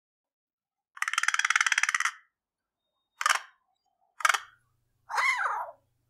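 American crow calling: a rapid rattle lasting about a second, then three short, harsh caws, the last one rising and falling in pitch.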